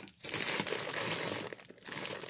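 Clear plastic bag of coins crinkling as it is handled and pulled open, a steady crackle that breaks off briefly near the end.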